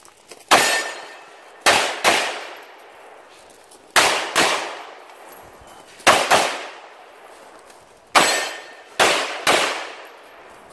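Pistol fired about ten times, mostly in quick pairs a fraction of a second apart with pauses of a second or more between them, each shot dying away over about half a second.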